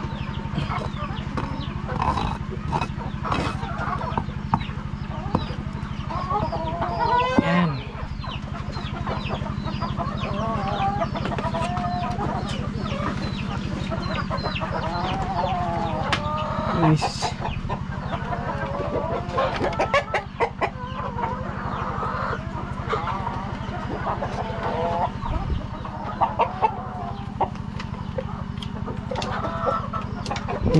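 Chickens clucking and calling in a coop, many short calls overlapping all the way through, over a steady low hum.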